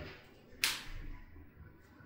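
A single short, sharp noise about half a second in, fading quickly, over faint room hum.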